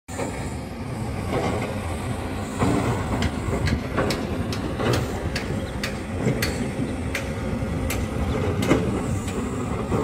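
Heavy diesel machinery at an earthworks site, dump trucks and an excavator, running with a steady low rumble and irregular sharp knocks and rattles throughout.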